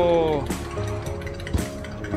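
A metal spoon stirring a drink in a glass, with a few sharp clinks against the glass, one standing out about one and a half seconds in. It is heard over background music, with a voice at the very start.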